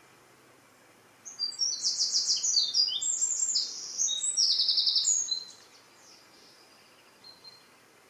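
A small songbird singing one loud, fast song of high trilled phrases that change pitch from phrase to phrase, starting about a second in and lasting about four seconds, with a short faint note near the end.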